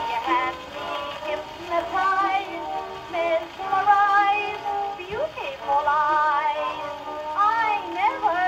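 An acoustic-era 78 rpm shellac record of a woman singing a popular song with instrumental accompaniment, played back on an acoustic phonograph through its reproducer and gooseneck tone arm. The sound is thin and narrow, with a vibrato voice and no bass.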